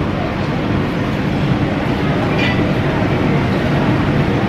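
Steady background din of a busy hawker centre: low rumbling noise with faint distant chatter mixed in.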